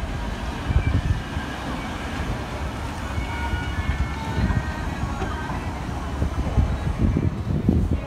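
Wind buffeting the microphone in gusts over the roar of sea surf, with faint distant voices underneath.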